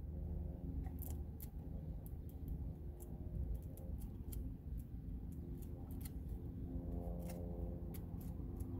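Pages of a hardcover book being fanned and flipped, a quick irregular string of paper flicks and snaps, over a low steady hum.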